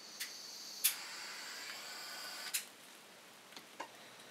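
Butane torch lighter sparking with a sharp click, its jet flame hissing steadily for under two seconds, then shutting off with another click. A few faint ticks follow near the end.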